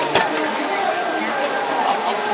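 One sharp click right at the start as the cab door latch of a Kubota DR-series combine is released and the door is pulled open. Steady crowd chatter fills a large hall behind it.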